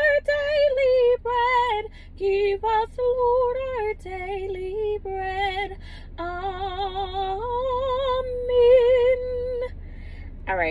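A woman singing unaccompanied, slow held notes with a wide vibrato, as the close of a sung grace before a meal. The singing stops just before the end.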